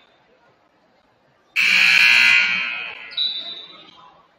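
Gymnasium scoreboard horn blaring once, starting suddenly about a second and a half in, holding for about a second, then fading. A short high tone follows near the end.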